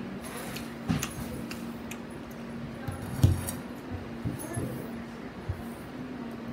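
A few short knocks and metallic clinks of things being handled at a table, the loudest about three seconds in, over a steady low hum.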